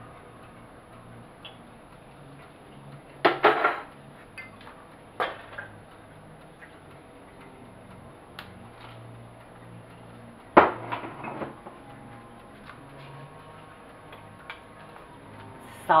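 Glassware clinking and knocking against a large white mixing bowl as milk is poured from a glass measuring cup and sugar from a small glass bowl, with three clear knocks, the loudest about ten seconds in, and lighter ticks between.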